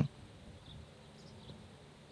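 Faint, even background noise in a short gap between spoken phrases.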